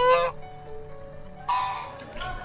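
Domestic white geese honking: two short, loud calls, one right at the start and one about one and a half seconds in.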